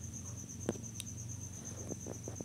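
A faint, steady, high-pitched pulsing trill over a low hum, with two short light clicks near the middle.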